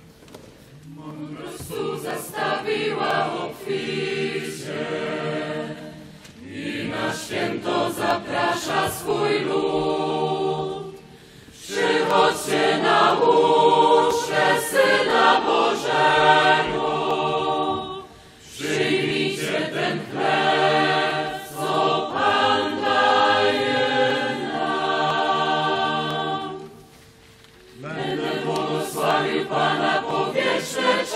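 Mixed choir of men's and women's voices singing a hymn in several phrases, with short breaths between them.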